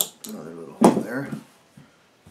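A sharp click at the start, then a man's voice: a second or so of low mumbled words or hums that no one transcribed.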